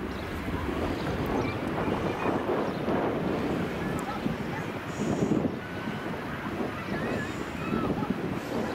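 Wind buffeting the microphone in uneven gusts over a steady wash of distant surf, with faint far-off voices.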